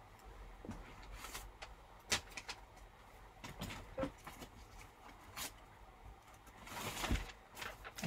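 Faint, scattered small taps and knocks of art materials being handled on a desk, then a short rustle of paper near the end.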